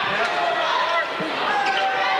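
Basketball bouncing on a hardwood gym floor during play, over the steady chatter of spectators in the stands.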